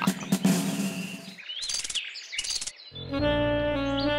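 Cartoon soundtrack: one music cue dies away, two short bursts of bird chirping follow about one and a half and two and a half seconds in, then a new music cue with long held notes starts about three seconds in.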